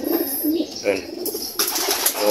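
Racing pigeons cooing, a low wavering coo in the first half-second.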